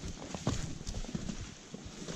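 Hiking footsteps on a rocky trail of loose stones, with an uneven series of sharp knocks and crunches as boots land on the rock.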